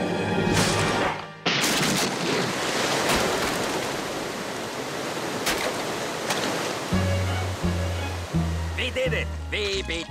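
Cartoon sound effect of a flood of water gushing and rushing, surging in about a second and a half in. From about seven seconds music joins it: a slow bass line of evenly spaced low notes.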